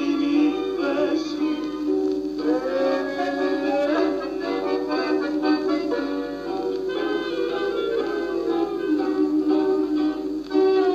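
An old Greek popular song recording: a sung melody with long held notes over instrumental accompaniment.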